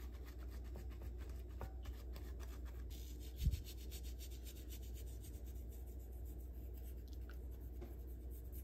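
Paper towel rubbing and dabbing on raw duck skin in a glass dish, patting it dry, for the first three seconds or so. After that only a faint steady low hum remains, with one soft low thump about halfway through.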